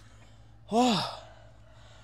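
A man's short, breathy sigh of effort, about three-quarters of a second in, its pitch rising and then falling.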